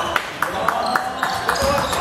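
Indoor basketball game: a run of short knocks, about three or four a second, from the ball being dribbled and players' shoes on the hardwood court. Players' voices are heard faintly behind, and it all echoes in a large gym hall.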